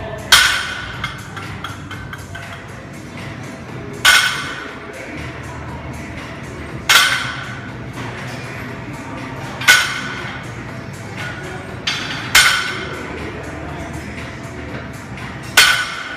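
Loaded barbell with weight plates set down on the gym floor between deadlift reps: six sharp knocks, each with a short ring, roughly every three seconds, over steady background music.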